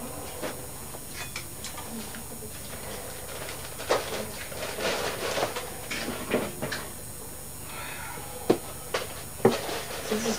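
Small clicks and knocks of diving gear and a handheld unit being handled, over a steady low room hum. One knock comes about four seconds in and three more come close together near the end.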